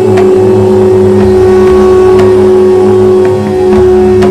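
A conch shell (shankh) blown in a long, loud, steady blast that dips briefly a little past the middle and then carries on, over devotional music with a few sharp percussive strikes.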